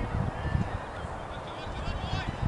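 Wind rumbling on the microphone, with a faint honking call like a goose's.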